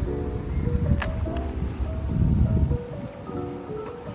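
Background music, a mellow track of held melody notes, over a low rumble of wind on the microphone. There is a sharp click about a second in.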